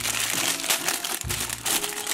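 Clear plastic bag of small plastic toy pieces crinkling steadily as hands grip it and pull it open.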